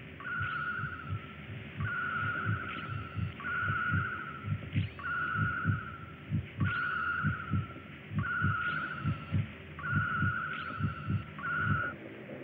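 Low heartbeat thumps, with an electronic tone sounding over them about once every 1.3 seconds; each tone opens with a brief rising chirp.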